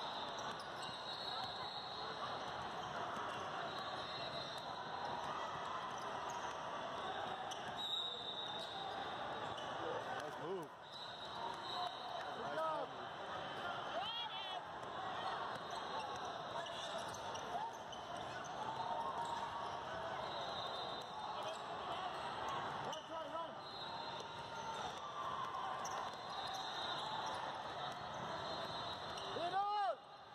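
Youth basketball game sounds in a large indoor hall: a basketball dribbling, players' and spectators' voices calling out in the background, and a few short, high sneaker squeaks on the court.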